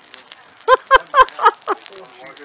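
A person laughing in a quick run of about five "ha"s, over the light crackle and popping of a burning leaf pile.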